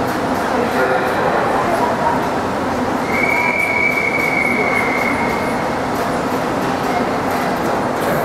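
A referee's whistle blows one long steady note for about two seconds, a few seconds in, over a steady hubbub in a large, echoing indoor pool hall. The long whistle is the signal for the swimmers to step up onto the starting blocks.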